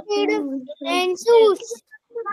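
Speech only: a child's voice reciting a line of English aloud in a sing-song way, heard over a video call.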